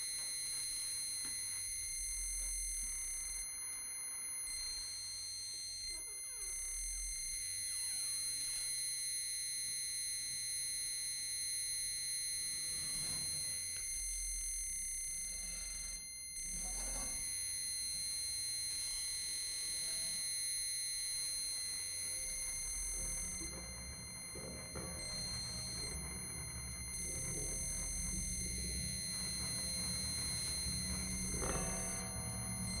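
Electro-acoustic improvisation: a steady, piercing high electronic tone with fainter tones above and below it, held without a break, over a low rumble that grows fuller near the end.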